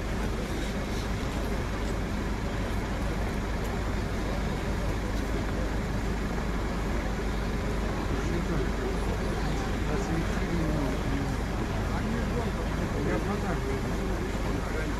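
Fire engine's motor running steadily with a low rumble, with faint distant voices in the second half.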